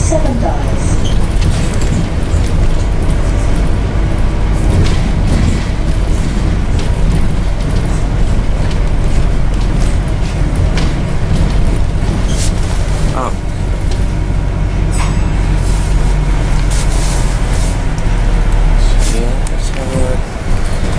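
Inside a moving double-decker bus: the steady low rumble of the engine and road noise, with occasional small knocks and rattles.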